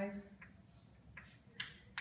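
Chalk tapping against a chalkboard as figures are written: about four short, sharp clicks at uneven spacing.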